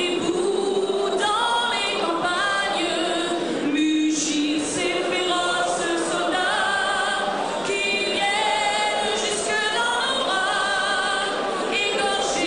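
A woman singing a national anthem into a microphone, the melody moving in long held notes.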